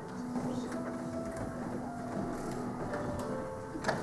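Soft piano prelude music, a few notes held for a second or more at a time, with a sharp knock near the end.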